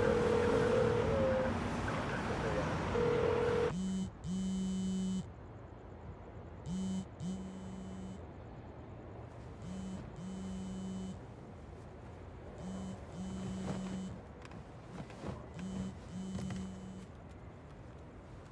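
Street noise with a steady ringing tone that stops and comes back briefly; then, from about four seconds in, a mobile phone vibrating on a nightstand, buzzing in pairs about every three seconds: an incoming call.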